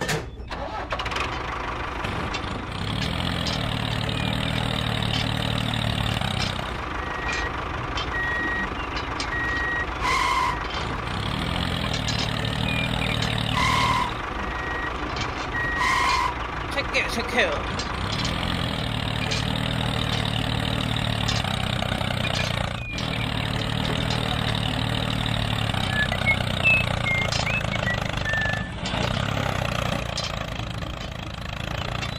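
Tractor engine running steadily, with a few short high electronic beeps about a third to halfway in.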